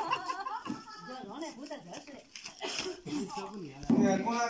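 Speech only: several people talking in the background, with no clear words.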